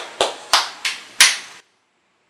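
A man clapping his hands, four sharp claps at about three a second. The audio then cuts out abruptly to dead silence.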